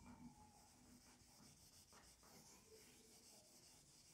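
Faint rubbing of an eraser wiping across a whiteboard, barely above near silence.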